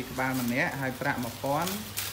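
A human voice in drawn-out, gliding phrases, over a steady low hum and a faint crackling hiss.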